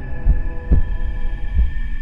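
Heartbeat sound effect: low, regular thumps over a steady humming drone.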